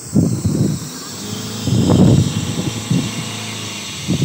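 Road traffic: vehicle noise with a steady high hiss and uneven low rumbles.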